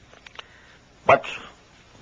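A pause in a man's lecture: a few faint clicks early on, then a single short spoken word ('but') about a second in, over quiet room tone.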